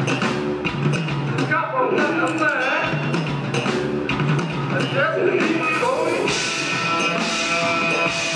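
Live rock band playing: a man sings lead over electric bass, electric guitar and drums, with the cymbals getting louder over the last two seconds.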